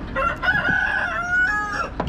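A rooster crowing once, a single call lasting nearly two seconds that steps up in pitch toward its end.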